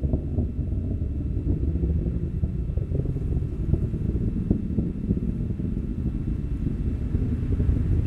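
Falcon 9 rocket's first-stage engines in powered ascent, heard from the ground as a steady low rumble with scattered crackles.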